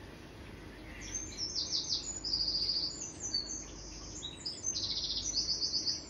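Small birds chirping in quick, high-pitched trills from a television's speakers. The trills start about a second in and come in several runs with short gaps.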